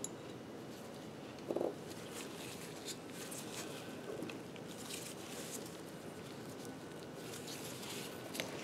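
Faint handling noise of nitrile-gloved hands working a ball bearing on its shaft: light rustles and small clicks, with one soft knock about one and a half seconds in.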